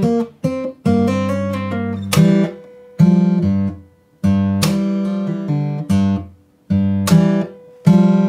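Martin J-40 steel-string acoustic guitar in open G tuning, played fingerstyle with a thumbpick in a slow blues shuffle. Alternating bass notes are punctuated by light percussive thumb clicks on the bass strings under fretted melody notes. The phrase is played in short sections with brief breaks between them.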